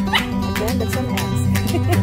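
A small dog yipping a few short, high calls, the first rising sharply just after the start, over background acoustic guitar music.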